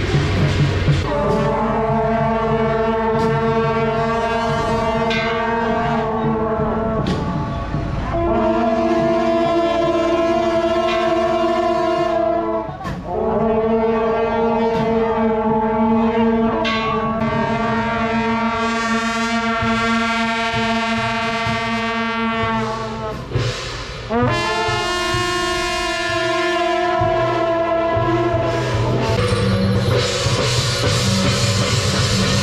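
A group of long brass processional horns (shaojiao) blowing long sustained notes together at several pitches, about four blasts each held for several seconds with short breaks between.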